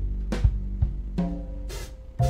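Live jazz piano trio playing: drum kit strikes over upright double bass, with a chord on the electric stage keyboard entering about a second in.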